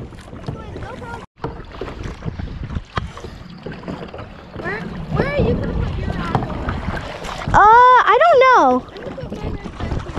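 Wind buffeting the microphone on an open lake, a steady low rumble under everything. A high voice gives a short call in the middle, then a louder wordless call lasting about a second near the end.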